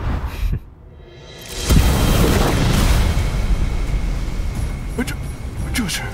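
Cartoon sound effects of a surge of power: a short whoosh, then a rising rush that breaks into a loud boom about two seconds in and a long rumble that slowly fades, under background music. This is the soul-power test device bursting.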